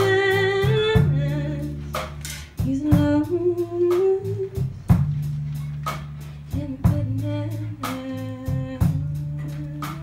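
A female singer with a live band: she holds long sung notes in separate phrases over a sustained low bass line and a steady drum beat.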